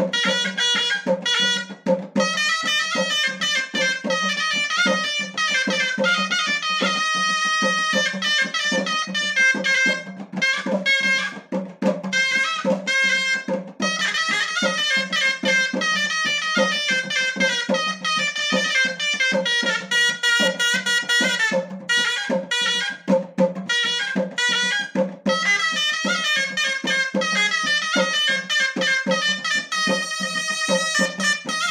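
Moroccan ghaita, a double-reed shawm with a flared metal bell, playing a fast, ornamented chaabi melody, with a few brief breaks.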